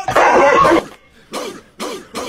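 An animal's harsh, noisy cry lasting under a second, then two shorter calls that fall in pitch.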